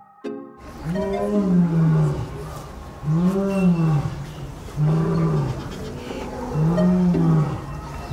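Male lion roaring: four drawn-out calls, each rising and then falling in pitch, spaced about two seconds apart.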